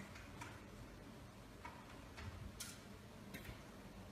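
Faint keyboard keystrokes: about half a dozen short, irregularly spaced clicks as a web address is typed.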